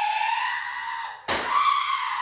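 A person's high-pitched, drawn-out scream, broken by a single thud a little past one second in, after which the scream carries on.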